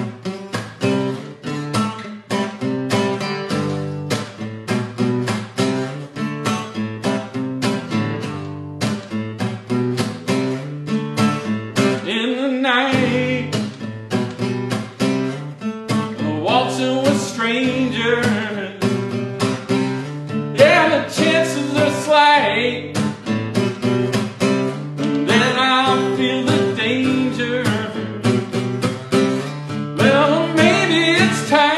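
Solo guitar strummed in a steady rhythm as a song's introduction, with a man singing over it from about twelve seconds in, in short phrases.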